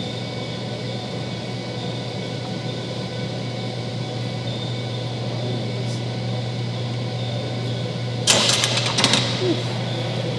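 A loaded Olympic barbell clanks down into the bench rack's metal hooks about eight seconds in, with a short rattle of the bar and plates as a bench press set is racked. A steady background hum runs under it.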